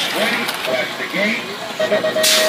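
Brief snatches of voices, short speech-like calls, over a steady background hiss.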